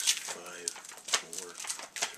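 Plastic-bagged comic books being handled and shuffled, with sharp crinkles and rustles, the loudest near the start and about a second in. A few short, low hums sound between them.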